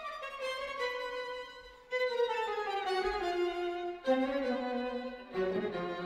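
String quartet playing: a violin melody descends over the first few seconds, a new phrase starts about four seconds in, and deeper notes join near the end.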